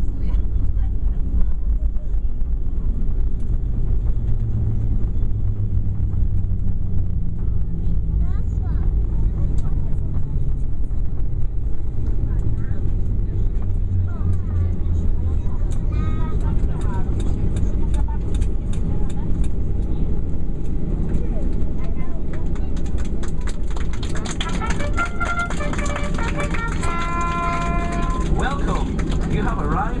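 Cabin noise of a Ryanair Boeing 737 decelerating on the runway after landing: a loud, steady rumble of engines and wheels. The engine hum sinks slightly and fades over the first fifteen seconds or so as reverse thrust spools down. Near the end, a brassy jingle starts over the cabin speakers.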